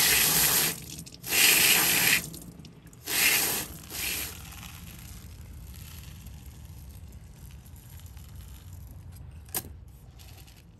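Water spraying in short bursts over a Haworthia offset held in the hand, rinsing soil off its roots: four or five spurts in the first four seconds, then it stops. A single sharp click comes near the end.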